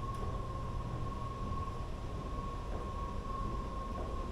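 Escalator running: a steady low rumble from the moving steps and drive, with a constant high tone over it.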